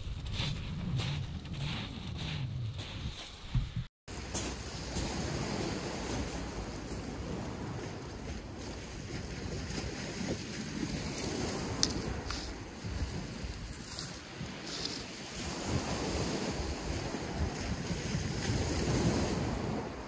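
Small waves washing on a shingle beach with wind buffeting the microphone, a steady wash that swells a little near the end. In the first few seconds, steps crunching on the pebbles.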